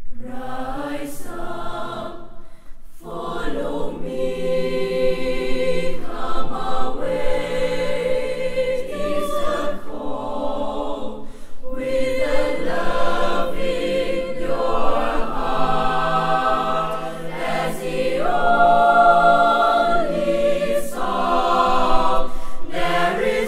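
A mixed youth choir of boys and girls singing in harmony, holding long chords in phrases a few seconds long with brief breaks between them.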